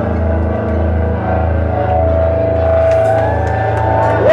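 Live band music: a sustained droning chord over a low bass pulse repeating a little under twice a second, with a long held high tone through the middle.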